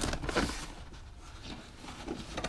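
Faint handling noise of trailer wiring being pushed into a carpet-lined compartment: a soft brushing rustle in the first half second, then a few light ticks over a quiet background.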